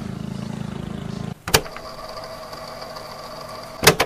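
A steady low mechanical hum cuts off about a second and a half in. A sharp click follows, then a steady motor whir, and another click near the end, like a camcorder tape mechanism starting playback.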